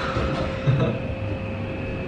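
Elevator car in motion: a steady low hum with a faint, even whine above it.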